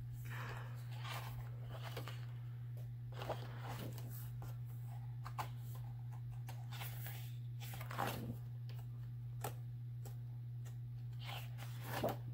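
Large cardstock pages of a spiral-bound coloring book being handled and turned, soft paper rustles and slides coming every second or two, the louder ones about eight seconds in and at the end. A steady low hum runs underneath.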